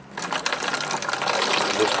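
Bordeaux mixture (copper sulphate with lime) being poured from a container through a cloth strainer into a plastic bottle: a steady pour of liquid, splashing and crackling as it runs through the mesh, starting just after the beginning.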